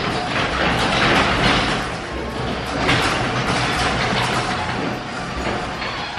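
Electric garage door opener running as the door rolls down to close, a steady rumbling rattle that starts suddenly and tails off near the end.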